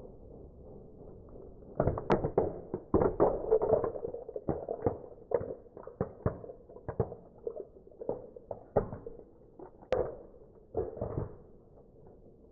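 Plastic puzzle cube cracking and breaking apart under a car tyre: a run of sharp cracks and clicks that starts about two seconds in, comes thickest over the next couple of seconds, then thins out towards the end.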